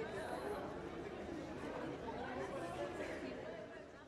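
Crowd of young people chatting, many overlapping voices with none standing out, fading out near the end.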